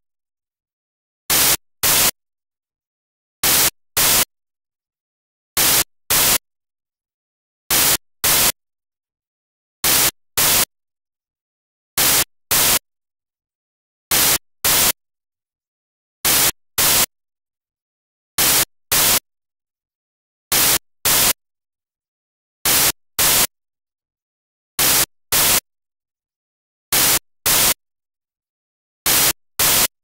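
Static hiss from a dead broadcast feed, coming in short, loud bursts in pairs, about one pair every two seconds, with silence in between.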